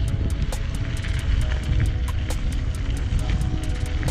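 Bicycle ridden fast over a gravel track: wind rumble on the handlebar-camera microphone and tyre noise, with frequent sharp clicks and rattles from the bike over the stones.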